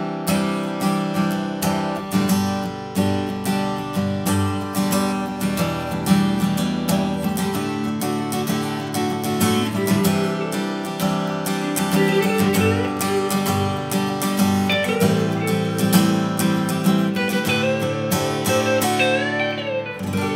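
Steel-string acoustic guitar strummed continuously with a thin, flexible 0.5 mm pick, a steady run of quick chord strums.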